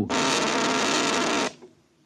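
Radio-drama sound effect of the logic (a home computer) working on a question: a steady electric buzz that starts abruptly and cuts off after about a second and a half, before the machine gives its answer.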